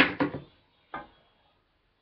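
Three short knocks, two close together at the start and a softer one about a second in, then near silence: objects being handled and set down.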